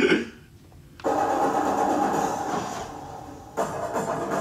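A short laugh, then about a second in the soundtrack of a Hindi-dubbed action film's fight scene cuts in: a dense, loud mix of noise and faint held tones that dips near the end and comes back.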